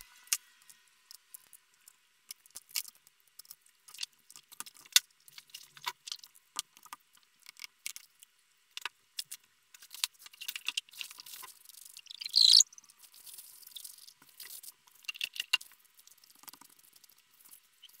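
Scattered small clicks, taps and light rustles of hands handling a laptop LCD panel and tools on a silicone work mat, with a brief louder rustling scrape about twelve seconds in.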